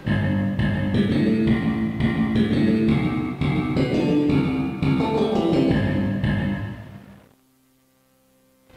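Instrumental music built on a plucked bass line with guitar, a run of distinct notes that fades out about six seconds in to near silence.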